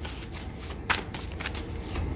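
Tarot cards being shuffled by hand: a soft, continuous rustle of cards with one sharper flick about a second in.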